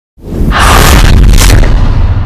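Cinematic trailer boom: a deep, loud rumbling hit with a rushing whoosh on top. It swells in just after the start, the whoosh drops away after about a second and a half, and the low rumble rings on.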